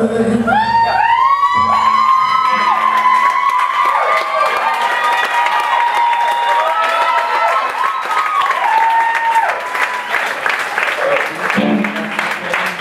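A live band's song ends a couple of seconds in, and the club audience cheers and whoops, with applause building toward the end.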